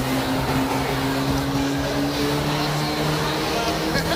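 Roadrunner-class race cars' engines running at speed on the track, a steady drone whose pitch climbs slowly and dips slightly near the end.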